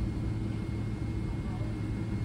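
Steady low rumble of airliner cabin noise while taxiing after landing, from a Boeing 777-300ER's engines at idle and rolling gear, with a faint steady high whine.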